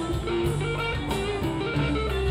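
A live rock band plays with guitars out front over keyboard, bass and a steady drum beat.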